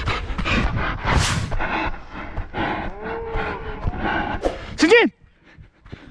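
Slowed-down slow-motion replay audio of a football game: players' voices stretched into long, low, drawn-out moans over a low rumbling noise. It cuts off abruptly about five seconds in.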